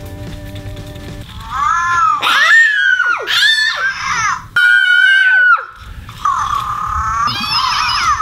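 Grimlings 'Scaredy Cat' interactive toy shaken into its grim mode: from about two seconds in it lets out a series of high-pitched electronic screeches and cries, one held at a steady pitch for about a second, over background music.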